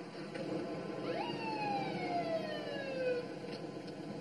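Police car siren giving a single whoop: a quick rise in pitch about a second in, then a slow fall over the next two seconds.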